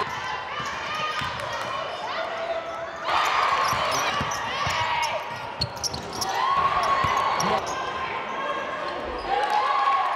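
Live basketball game sound on a hardwood court: the ball bouncing, sneakers squeaking, and shouting voices echoing in the gym, getting louder about three seconds in.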